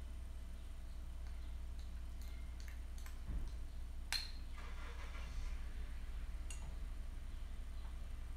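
A ceramic tea strainer lightly clinking against glass tea pitchers, with one sharper clink about four seconds in, over a steady low hum.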